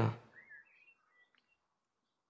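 A short spoken 'ja', then near silence with a few faint high chirps in the first second or so.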